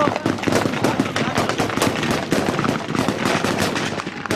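Machine gun firing long, rapid bursts of automatic fire at close range, the shots following one another in quick succession.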